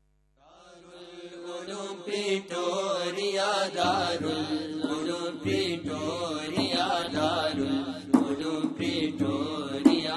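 Islamic devotional chanting fading in from silence about half a second in, then carrying on steadily with sustained, wavering voice, and a couple of sharp clicks near the end.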